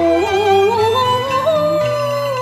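A woman's voice singing a Cantonese opera (yuequ) melody: one long drawn-out line that glides up and then holds, wavering, over a traditional instrumental accompaniment.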